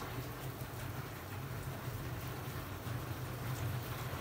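Water running and splashing steadily where someone's water is spilling over, with a low steady hum underneath.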